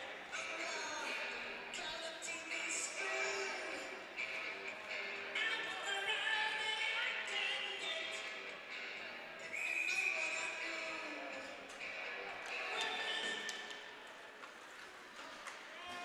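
Ice rink arena ambience: a mix of crowd voices from the stands and music, fairly faint, with no single sound standing out.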